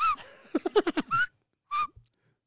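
People laughing: a quick run of falling 'ha-ha' pulses, with short, high-pitched squeaky chirps, like little whistles, at the start, a little past a second in, and near the end.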